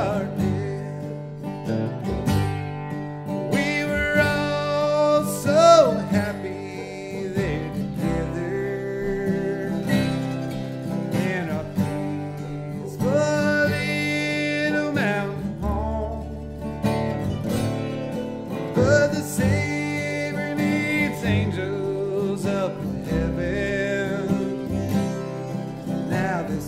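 Bluegrass band playing: acoustic guitar, mandolin, banjo and bass, with a sung vocal line held on long, wavering notes over the picking.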